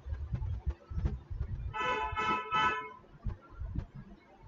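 A vehicle horn honking three short times in quick succession, near the middle, over a low rumble and a few light knocks.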